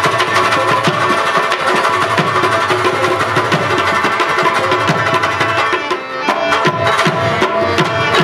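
Instrumental Pashto folk music: a rabab plucked in quick runs over tabla drumming and held harmonium notes, with a brief dip in loudness about six seconds in.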